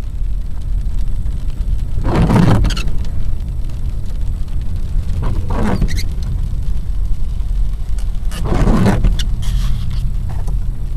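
Car driving on a wet road, heard from inside: a steady low road rumble with a swish about every three seconds.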